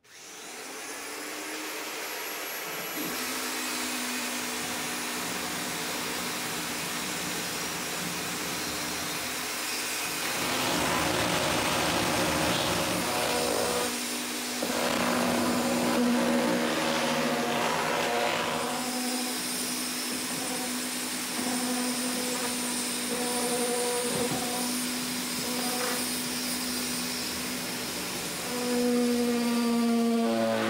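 An electric motor switches on suddenly and runs steadily with a humming tone. It gets louder in a few stretches.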